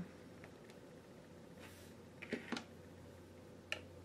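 Quiet room tone with a few faint light clicks and taps, a cluster about two seconds in and a sharper one near the end, from small art supplies being handled: a paint dropper and brush.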